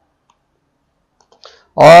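A few faint computer mouse clicks over near silence about a second and a half in.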